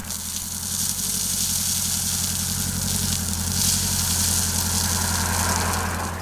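Front loader's diesel engine running steadily while its bucket tips out a load of gravel, the stones pouring down with a hiss that grows somewhat past the middle.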